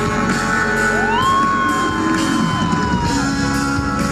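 Live rock band playing: electric guitar and drums with steady cymbal hits. About a second in, a high voice slides up into a long held note that falls away near the end.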